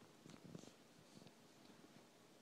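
Tabby cat spinning after her tail on carpet: a few faint, soft, low sounds about half a second in and again just after a second.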